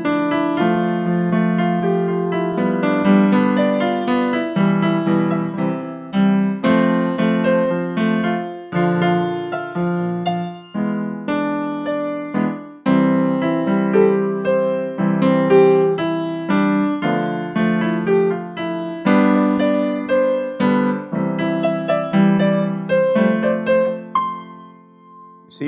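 Chords played on a digital keyboard at a quicker tempo, a new chord struck about every second and fading before the next, moving through chords such as E7 and F over C.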